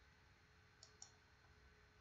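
Two faint computer mouse clicks about a second in, a fraction of a second apart, over near silence.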